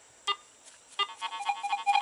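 A Garrett metal detector powering on: a short electronic beep, then a second beep about a second later that runs straight into a steady electronic tone.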